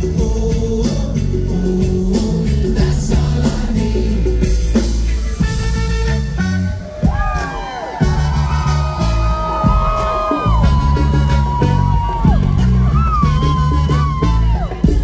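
Live reggae-rock band playing loudly, with a trumpet and trombone section taking over from about seven seconds in: long held notes with bends up and down over the bass and drums.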